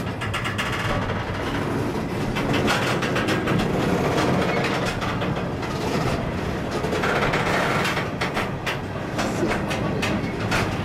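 Freight car rolling along the track, heard up close from its end platform: a steady rumble and rattle of steel wheels on rail, with repeated clicks and clanks from the wheels and car.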